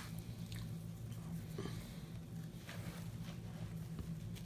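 Faint sounds of a gloved hand mixing moist grated carrot pulp and seeds in a bowl, a few soft taps over a steady low hum.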